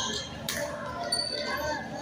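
Badminton play on a court: a sharp hit about half a second in and brief high squeaks, with people talking.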